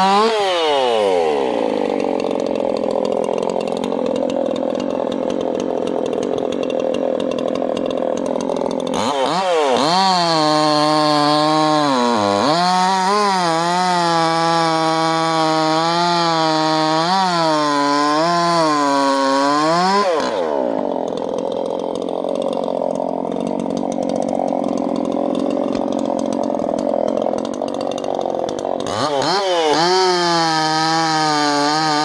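Muffler-modded Maruyama/Dolmar 5100S 50 cc two-stroke chainsaw cutting Turkey oak logs. The revs fall off at the start and the saw runs lower for several seconds. About nine seconds in it goes to full throttle, and the pitch wavers and dips as the chain loads up in the cut for about ten seconds. It then drops back to a lower speed and revs up again near the end.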